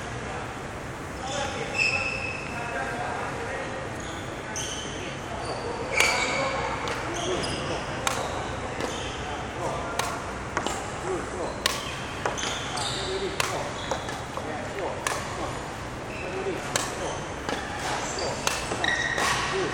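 Badminton rally: sharp racket strikes on the shuttlecock at irregular intervals, with short squeaks of shoes on the wooden court floor, echoing in a large hall.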